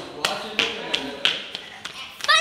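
Children's footsteps on a hard tiled floor as they run: a series of about six irregular sharp taps, with faint children's voices between them.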